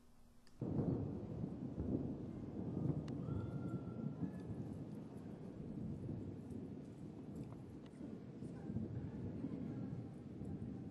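Outdoor ambience starting about half a second in: an uneven low rumble, with scattered light clicks and rustles of footsteps on a dry dirt trail.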